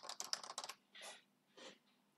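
Faint computer keyboard typing: a quick run of keystrokes in the first second, then a pause.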